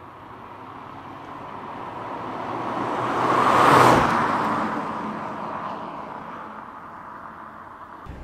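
A 2022 Mazda MX-5 roadster with a 1.5-litre four-cylinder engine drives past. Its engine and road noise build up as it approaches, are loudest about four seconds in, then fade away.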